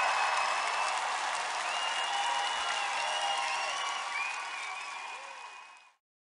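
A rushing, applause-like noise with a few faint high whistling glides, fading out steadily to silence just before the end.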